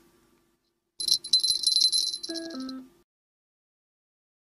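Small bell on a fishing rod jingling rapidly for about two seconds, the sign of a fish biting on the line. Two short tones stepping down in pitch sound just before it stops.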